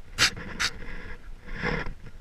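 A person panting close to the microphone: two quick sharp breaths early, then a longer, fuller breath near the end.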